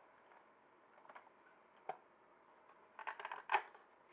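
Hard plastic body and chassis of a small Axial SCX24 RC crawler being handled: a few light clicks, then a quick run of clicks and knocks about three seconds in as the body is lifted off the chassis.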